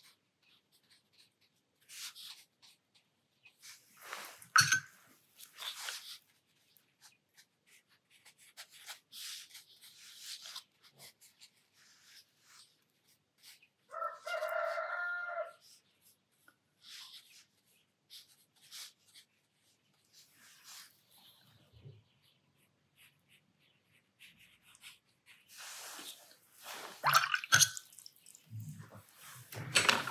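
A rooster crows once, a single pitched call of about two seconds about halfway through. Scattered short taps and rustles of paintbrush work come before and after, the loudest near the start and near the end.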